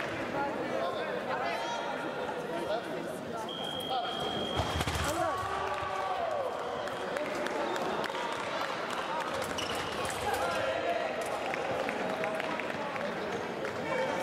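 Indistinct voices echoing in a large sports hall, with a heavy thud about five seconds in. Just before the thud a brief high steady tone sounds.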